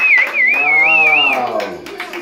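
Voices singing a long held note: a high, wavering note with vibrato over a lower voice that holds and then slides down in pitch, ending just before the close.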